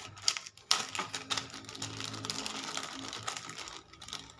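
Zip-lock plastic bag being pulled open, its seal unzipping in a rapid run of clicks with crinkling plastic, starting about a second in and lasting nearly three seconds.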